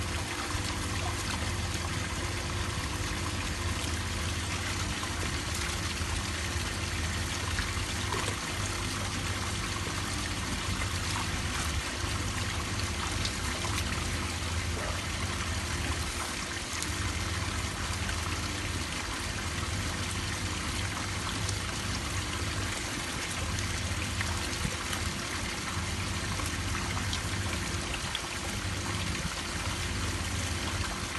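Water trickling and bubbling steadily in a shallow fish tub fed by a thin tube, over a low steady hum.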